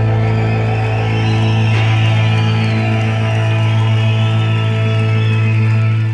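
Live rock band holding a final sustained chord: a loud, steady, droning low note with high wavering tones above it and no drums.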